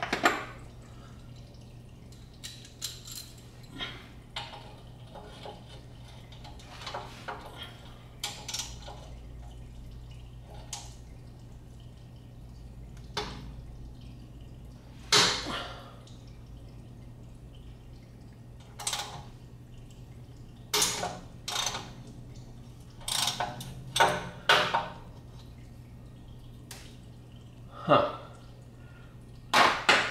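Hand wrench and sockets working the rusted 13 mm nuts off the exhaust mid-section studs under a car: irregular sharp metal clinks and taps. The nuts are starting to come loose rather than snapping the studs. A steady low hum runs underneath.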